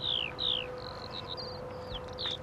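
A small bird calling: two quick high whistles that slide downward, then a run of short high chirps.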